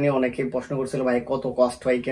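Only speech: a man talking in Bengali.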